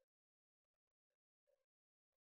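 Near silence, with no audible sound.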